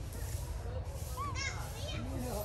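A few short, high-pitched arching squeals from young long-tailed macaques, mostly about a second and a half in, over faint background human voices and a low steady rumble.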